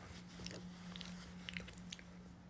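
A person chewing food close to the microphone: faint wet mouth clicks and smacks, several in quick succession, over a steady low hum.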